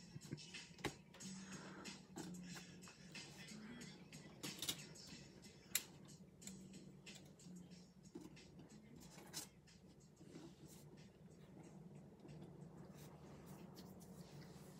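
Near silence with a few light clicks and taps of trading cards and clear plastic card stands being handled, the sharpest about six seconds in, over a faint low steady tone.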